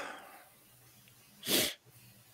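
A man's single short, sharp breath noise about a second and a half in, lasting under half a second, after the tail of a spoken word fades at the start.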